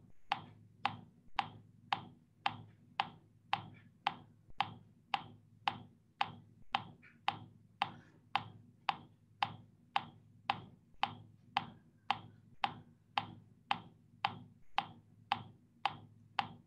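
Metronome ticking at a steady tempo, about two clicks a second, keeping the beat with no voice over it.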